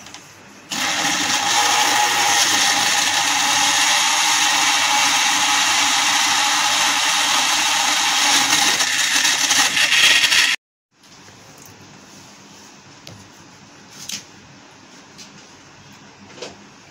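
Countertop blender starts about a second in and runs steadily for about ten seconds, blending chunks of mango with milk, yogurt and ice cubes into a smoothie, then cuts off abruptly.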